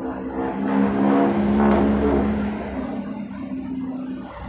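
A motor vehicle's engine running with a steady pitched hum over a low rumble.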